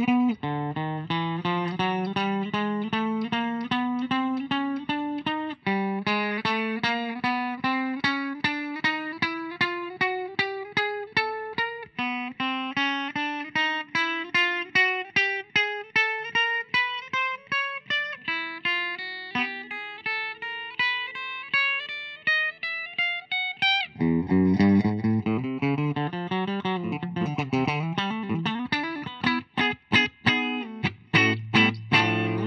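Amplified 2007 Gibson Les Paul Studio Premium Plus electric guitar picked one note at a time, climbing steadily up the neck in long runs that start again from low several times. This is a fret-by-fret check for buzz from worn frets, which the player calls "a little bit" buzzy. From about 24 s in, it changes to a quick lick with string bends.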